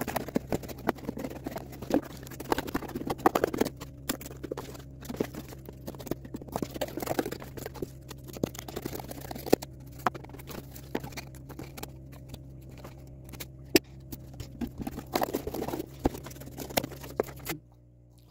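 Scissors cutting through corrugated cardboard: an uneven run of crunching snips and clicks, with the cardboard pieces rustling as they are turned and moved. It stops abruptly near the end.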